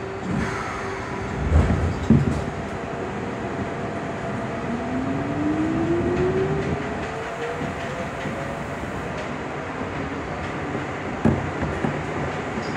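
Seoul Subway Line 2 train pulling away from a station, heard from inside the car: two low knocks about two seconds in as it starts to move, then the traction motor whine climbing steadily in pitch over several seconds as the train accelerates, over the rumble of the wheels on the track.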